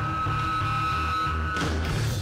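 Live rock band playing: a held high electric-guitar tone over a pulsing bass riff. The drums and cymbals crash in just before the end.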